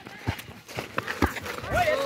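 A few dull thumps from players running and a football being kicked on a dirt pitch, with a shouted voice near the end.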